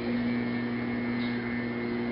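A man's voice holding one long, level note for nearly three seconds.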